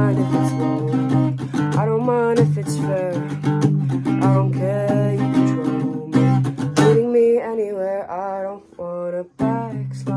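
Acoustic guitar strummed under a singing voice. About seven seconds in the strumming stops and the voice carries on alone, and after a short gap both come back in just before the end.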